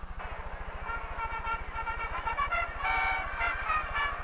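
Marching band trumpets playing a series of held notes in harmony, the notes changing every half second or so. A steady low hum runs underneath.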